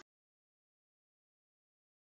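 Silence: the sound track is cut to nothing, with no room tone.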